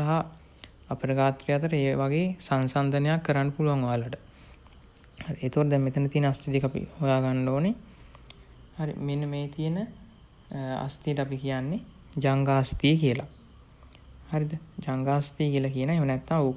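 A man's voice speaking in Sinhala, explaining in phrases with short pauses between them, over a steady high-pitched background tone.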